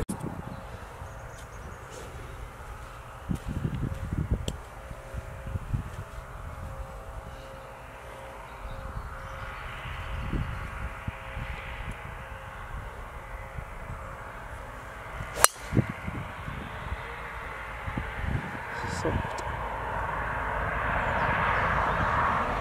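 A driver striking a golf ball off the tee: one sharp crack about two-thirds of the way through, over a steady low outdoor rumble that swells slightly near the end.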